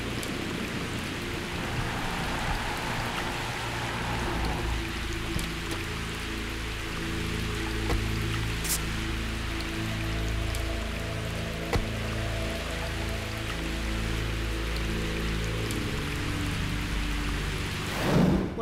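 Heavy rain falling in a steady hiss, with background music playing underneath.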